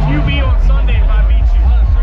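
Several people talking over loud music with a heavy, steady bass.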